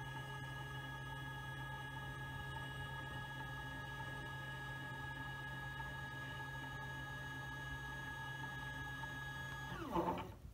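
iOptron CEM60 equatorial mount's RA-axis motor slewing at maximum speed: a steady, pitched electronic whine that rises as the motor spins up at the start and drops away as it slows to a stop near the end.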